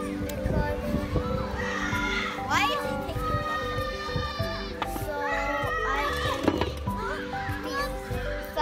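Children's voices calling and shouting on a playground, with one long high call about three seconds in, over background music.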